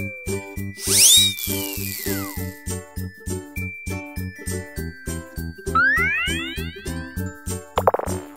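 Cartoon background music with a steady, bouncy beat, overlaid with cartoon sound effects: a loud whistling glide that rises and then falls about a second in, a set of rising swoops near the six-second mark, and light tinkling.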